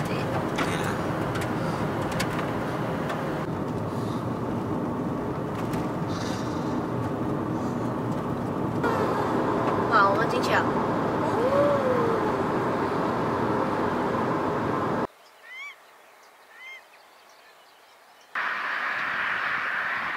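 Steady road and engine noise inside a moving car's cabin. It cuts off abruptly about three-quarters of the way through, leaving a quiet stretch with a couple of short rising chirps, before a different steady hiss begins near the end.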